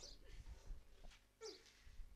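Mostly quiet, with a couple of faint, short, high vocal sounds from a laughing man, one of them falling steeply in pitch about one and a half seconds in.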